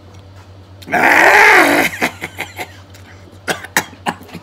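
A man lets out a loud, drawn-out throaty vocal sound about a second in, lasting about a second, its pitch rising and then falling. It is followed by small smacking and chewing clicks as he eats grilled catfish by hand.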